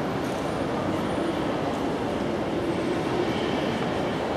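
Steady, even din of a large, high-ceilinged lobby: a constant wash of noise with no distinct events.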